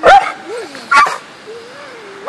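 Small white dog yapping in short sharp bursts with a wavering whine between them, worked up and excited.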